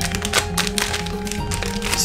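Background music with steady held notes, overlaid by the crinkling and crackling of a foil blind-bag sachet being torn open by hand.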